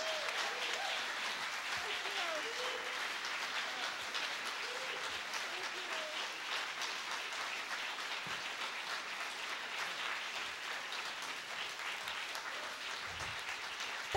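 Concert audience applauding steadily, many hands clapping at once.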